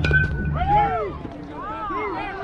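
A metal bat strikes the ball with a sharp crack and brief ring, followed by spectators shouting and cheering in long, swooping yells.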